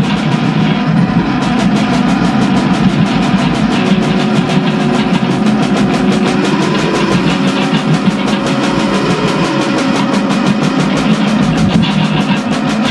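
A live improvised rock jam: electric guitars over drums keeping a fast, steady beat. A few guitar notes are held for several seconds partway through.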